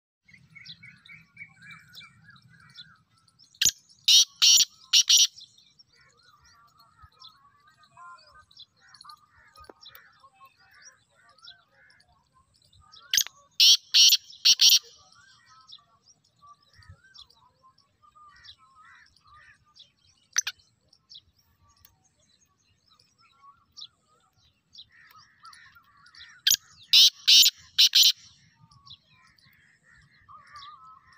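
Black francolin calling three times, each call a loud, harsh series of four or five rapid notes lasting about a second and a half, roughly ten to twelve seconds apart. Faint chirps of other small birds fill the gaps.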